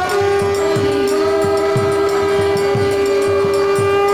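Kirtan music: a harmonium holding one long, steady chord over khol drum strokes with bending bass notes, about three a second.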